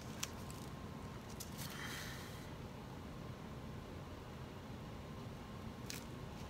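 Quiet room tone with one sharp click just after the start and a brief soft rustle about two seconds in.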